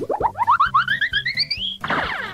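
Comic sound effect: a quick run of about ten short rising swoops, each pitched higher than the last, climbing for about a second and a half and stopping just before the end.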